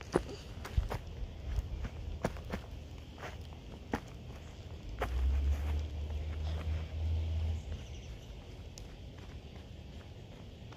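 Footsteps on grass and dirt, with scattered sharp knocks and a low rumble between about five and seven and a half seconds in.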